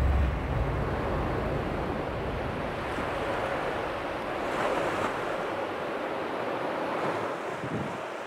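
Sea surf washing on the shore with gusty wind, the wind rumbling on the microphone most strongly in the first second.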